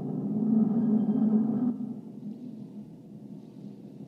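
Elevator hoist motor humming: a steady low droning chord that swells and then drops away about two seconds in to a fainter rumble.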